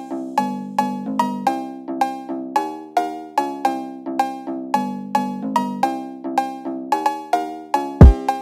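Phonk cowbell melody playing on its own with the drums and bass dropped out: a quick run of short, pitched metallic cowbell hits, several a second.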